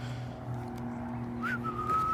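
A person whistling one held note, starting about three quarters of the way in with a short upward flick, over the steady low hum of an approaching car's engine.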